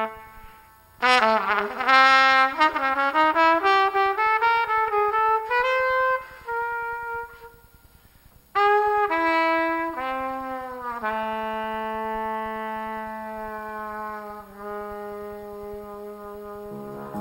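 Jazz trumpet playing alone, in a free cadenza: a fast run of notes climbing for several seconds, a held note and a short pause about halfway, then a few falling notes that settle into a long, low held note near the end.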